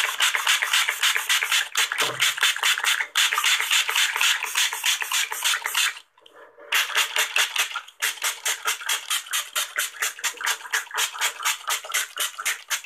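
A spray bottle pumped very fast, about six short hissing squirts a second. The squirts come in two long runs with a pause a little after halfway. It is recorded close on an earphone microphone.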